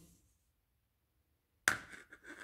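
Near silence, broken near the end by one sharp click that dies away quickly.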